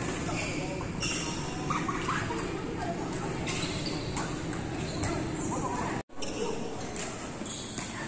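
Echoing sports-hall ambience: people talking in the background, with a few short knocks. The sound drops out for an instant about six seconds in.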